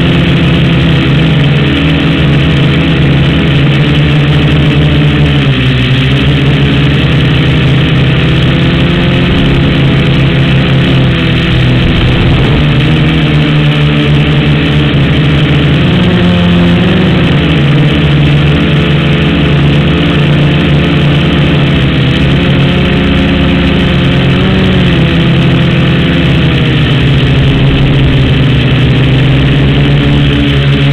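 Blade mQX micro quadcopter's electric motors and propellers running in flight right beside the onboard camera, several steady tones that drift up and down in pitch as the motor speeds change.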